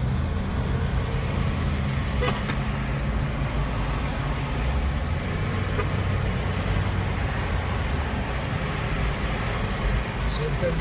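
Steady engine and road noise of a moving car heard from inside its cabin, a continuous low drone.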